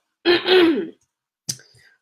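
A woman clearing her throat once with a voiced "ahem", from a lingering cold she is getting over, followed by a brief click about a second and a half in.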